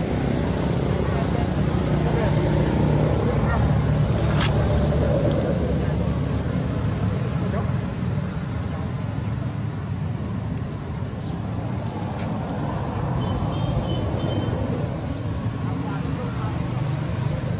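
Steady outdoor background noise, a continuous low hum with a hiss over it, broken by a single sharp click about four seconds in.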